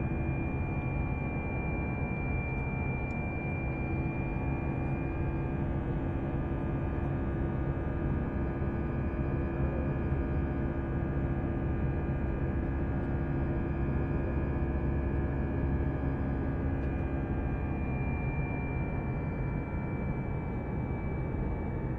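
Steady cabin noise of an Airbus A320 in flight: a constant rumble of the engines and the airflow, with a thin high whine that fades out for a stretch in the middle and comes back near the end.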